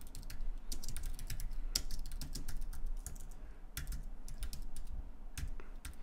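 Typing on a computer keyboard: a quick, uneven run of key clicks as a line of code is typed, with a few sharper keystrokes among them.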